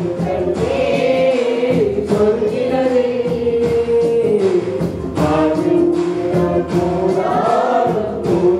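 A young woman singing a slow melody with long, held notes; the tune dips about halfway through and climbs again near the end.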